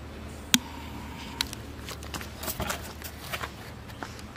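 Handling noise as a firecracker is set down into a cement-lined hole: a sharp click about half a second in and a smaller one a second later, then a few soft scuffs and footsteps on gritty ground.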